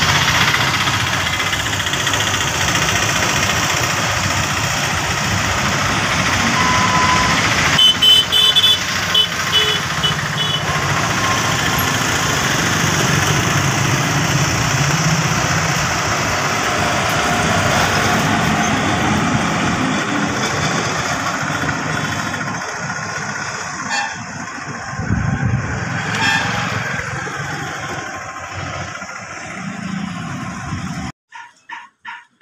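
Freight train of hopper wagons rumbling past overhead while motorcycles, scooters and cars ride through the underpass beneath it. A horn beeps several times about eight seconds in, and the din thins out over the last ten seconds.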